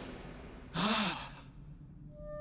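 A man's sigh: one breathy exhale with a voice in it, lasting under a second, its pitch rising and then falling, about a second in.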